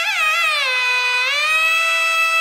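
Nadaswaram, a South Indian double-reed temple pipe, playing a solo Carnatic melodic line: quick ornamented turns, then a slow bend down in pitch and back up to a long held note.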